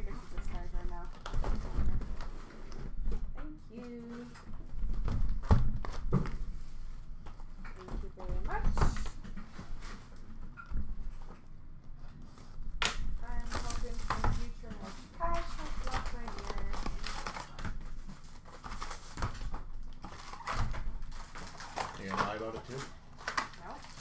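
Cardboard hobby boxes being unpacked from a shipping case and handled on a glass counter: scattered sharp knocks and taps as boxes are set down, and plastic wrap being cut and crinkled. Quiet talk comes and goes.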